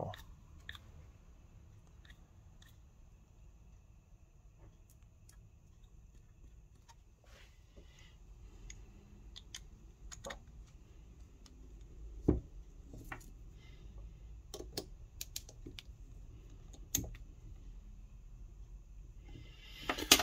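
Faint, scattered metallic clicks and taps from a small spanner and turbo core parts being handled on a workbench, with two sharper clicks in the second half.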